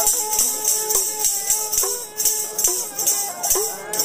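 Punjabi folk instrumental passage: a bowed sarangi plays held notes with short slides, over regular strokes of a hand-held dhadd drum and the continuous metallic jingling of a chimta.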